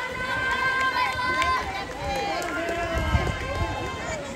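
Voices of people calling out across an outdoor pool, with one drawn-out call in the first second and a half and shorter calls after it, over steady outdoor background noise.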